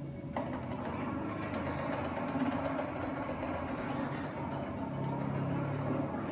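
Asus Zenbo robot's small electric motors whirring steadily as it moves, with a single click about half a second in.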